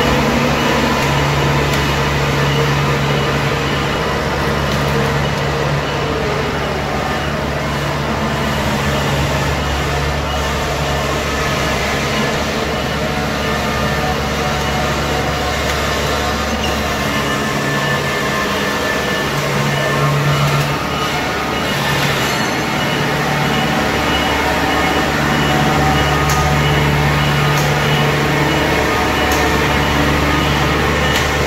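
Kubota DC-70 combine harvester's diesel engine running steadily while the machine is driven on its rubber tracks. The engine note drops away for a few seconds past the middle and then returns.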